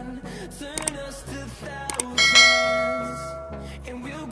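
Subscribe-button animation sound effects over quiet background music: two short clicks, then a notification-bell chime rings out about two seconds in and fades away over a second or so.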